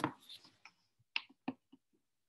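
A short run of sharp clicks and taps: a dense cluster at the start, then three separate clicks in the second half.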